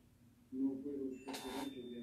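Speech: a person talking, starting about half a second in after a brief pause.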